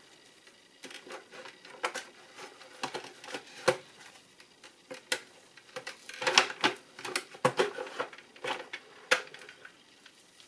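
Hard plastic parts of a car instrument cluster clicking and knocking as its circuit board is worked out of the plastic housing by hand. Scattered clicks come every second or so, with a busier run of them about six to seven and a half seconds in.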